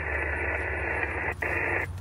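Static hiss from an amateur radio transceiver's speaker, an open sideband receiver between transmissions: a steady band of noise that drops out for an instant about two-thirds through and stops just before the end.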